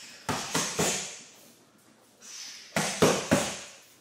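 Boxing gloves smacking focus mitts in two quick three-punch combinations, the punches about a quarter of a second apart, with a pause of about two seconds between the sets.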